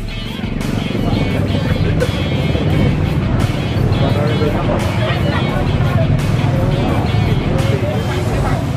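Background music over the hubbub of a crowd talking and motorcycle engines running close by.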